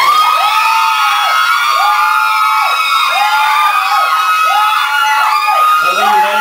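A man's voice imitating a siren through a handheld microphone, with his hands cupped around it beatbox-style. The tone rises, holds and drops about five times, roughly once a second.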